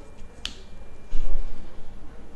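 A single sharp click about half a second in as the cable's metal push-pull connector latches into the MicroAire PAL LipoSculptor handpiece. A louder low thump follows just over a second in.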